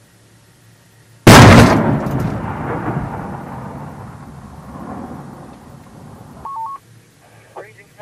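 A single heavy explosion about a second in, from a target blowing up in a fireball, with a long rumble that fades over about five seconds. Near the end come a short two-tone electronic beep and broken bits of radio voice.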